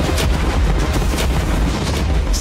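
A battery of small cannons firing in a rapid volley, the shots coming close together and overlapping with deep booms.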